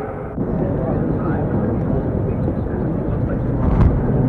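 A steady low rumble of outdoor noise starts abruptly with a cut about half a second in, with faint voices mixed in, and grows a little louder near the end.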